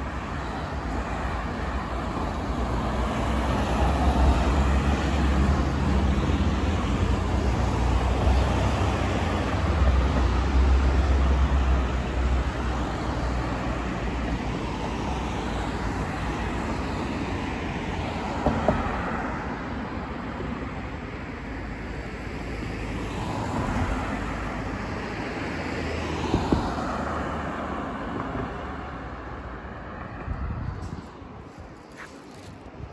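Road traffic passing close by: a heavy vehicle's low rumble builds and fades over the first half, then cars and a van go by with a steady tyre and engine noise. Two short knocks stand out, about two-thirds of the way in and again near the end.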